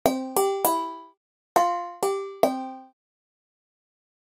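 Sampled handbells from the Bolder Sounds Handbells V2 library played from a keyboard: a quick run of three struck bell notes, then, after a short gap, another run of three. Each note rings only briefly before it is damped, as the sustain is switched off.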